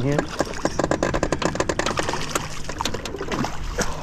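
Spinning reel cranked quickly with a rapid run of ticks as a hooked black crappie is reeled to the boat, with splashing from the fish at the surface.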